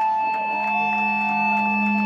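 Amplified electric guitar and bass held in a ringing drone: several steady sustained tones, one of which bends up and back down about the middle.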